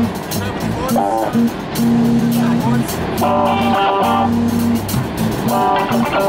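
Three-piece street band playing live: electric guitar chords over long held electric bass notes, with a drum kit keeping time.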